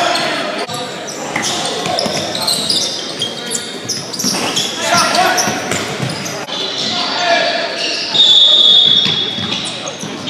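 Basketball game on a hardwood gym court: the ball bouncing, footfalls and scattered voices of players and onlookers, all echoing in the large hall. A high-pitched squeal rings out for nearly a second about eight seconds in.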